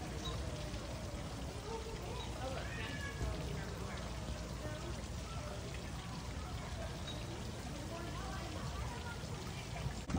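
Steady trickle of water running down a small rock cascade, with faint, indistinct chatter of people in the distance.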